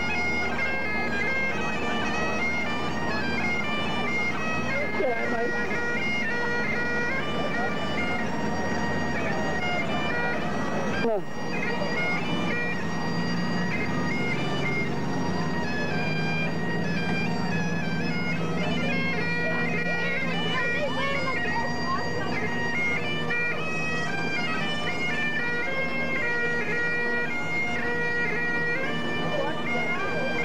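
Bagpipes playing a tune, the melody stepping from note to note over steady, unbroken drones.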